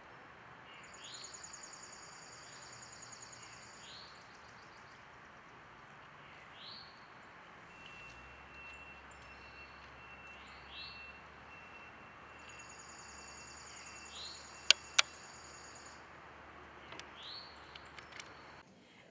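Outdoor ambience with birds chirping: short downward calls every couple of seconds, and twice a high, rapid trill. Two sharp clicks in quick succession about three quarters of the way through are the loudest sounds.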